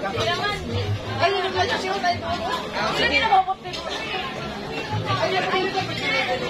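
Speech only: several people chatting around a table, voices overlapping.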